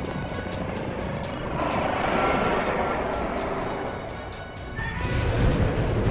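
A cartoon monster's long, noisy roar, swelling and fading over about three seconds in the middle, laid over dramatic soundtrack music.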